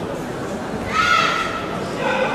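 A person's short, high-pitched shout about a second in, lasting about half a second, over steady background noise.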